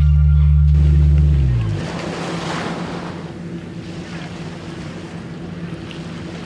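Background music that stops about a second and a half in, giving way to ocean surf and wind on the microphone at the water's edge, with a steady low hum underneath.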